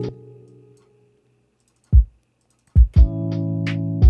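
Lo-fi beat playing back from a DAW, with held chords, kick drum and hi-hats, stops at the start and dies away over about a second. After a silence a lone kick drum hits at about two seconds and two more in quick succession near three seconds, then the loop starts again with chords, kicks and hats.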